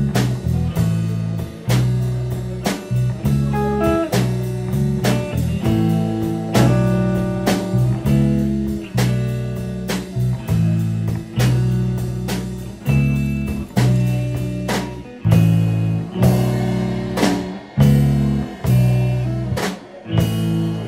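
Live rock band playing: electric guitar, bass guitar and drum kit with a steady beat and strong bass notes.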